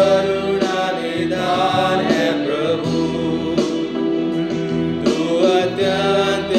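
A Hindi Christian worship hymn sung with instrumental backing, the sung melody carried over steady accompaniment.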